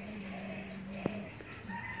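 Faint background fowl calls: a run of quick, falling high chirps over a low held tone, with a single sharp click about a second in.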